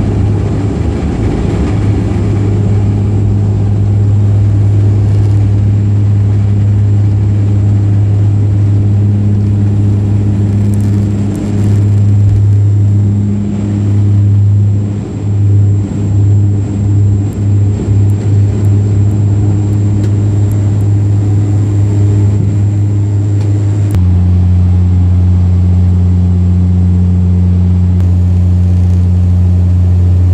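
Bombardier Dash 8 Q400 turboprop heard from inside the cabin on takeoff: a loud, steady propeller drone. Its loudness wavers and dips for several seconds midway. About three-quarters of the way through it drops to a slightly lower, steadier pitch as the aircraft climbs out.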